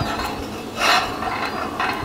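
Whole eggs in their shells rolled by hand across the wire grate of a charcoal grill, giving a rattling scrape against the metal bars, loudest about a second in.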